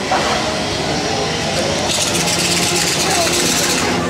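Gas chainsaw running and revving, a haunted-attraction scare prop. Its rough engine buzz gets harsher about two seconds in, with voices alongside.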